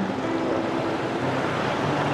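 Steady city motorbike traffic noise heard from a moving rider: a low engine hum that shifts pitch a couple of times under a constant hiss of wind and road noise, with scooters passing close by.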